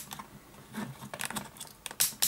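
A few faint clicks from the rotary selector dial of a handheld digital multimeter as it is turned through its detents.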